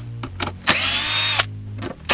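Drill with a screwdriver bit backing screws out of the back panel of an MDF box. Its motor whines up quickly in pitch and holds for under a second in the middle, with a short knock either side, and starts another burst at the very end.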